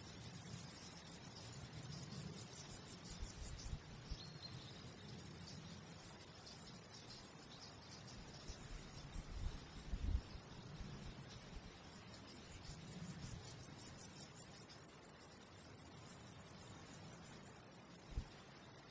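Quiet outdoor ambience with a stridulating insect chirping in two rapid, high-pitched bursts of about two seconds each, the first a couple of seconds in and the second about twelve seconds in. A low rumble swells around ten seconds in.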